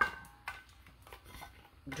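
Stainless steel drink bottle being handled: a metallic clink that rings briefly right at the start, then a few light knocks and taps as it is turned in the hands.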